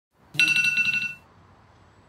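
Smartphone alarm tone: a short burst of rapidly pulsing electronic beeps, lasting under a second, that starts about half a second in.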